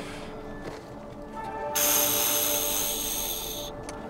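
Handheld canned-oxygen canister hissing in one steady release of about two seconds, starting near the middle, as a deep breath is drawn from its mask. Soft background music runs underneath.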